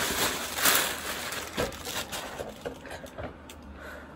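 Fabric of an oversized hooded blanket sweatshirt rustling and brushing close to the microphone as the wearer moves, loudest in the first second, then softer scattered rustles and small clicks.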